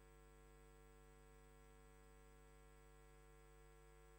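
Near silence: a gap in the audio track with only a very faint steady hum.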